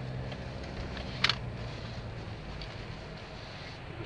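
Four-wheel-drive car heard from inside the cabin while driving slowly: a steady low engine and road hum, with one short click about a second in.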